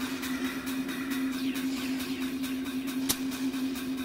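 Ambient soundtrack drone: one steady low tone with faint scattered clicks and crackles over it, and a sharper click about three seconds in.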